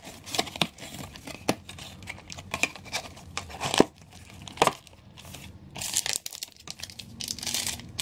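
Foil booster-pack wrappers crinkling as hands grip them and pull them out of a cardboard booster box. The sound comes as scattered sharp crackles, then a longer stretch of crinkling near the end.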